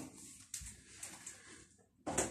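Quiet room with faint handling noise and a soft click about half a second in.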